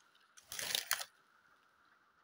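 Plastic Mini Brands capsule ball being handled and twisted open, giving a short crinkly plastic rustle about half a second in.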